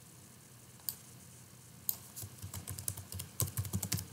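Typing on a computer keyboard: two single clicks about one and two seconds in, then a quick run of keystrokes through the second half.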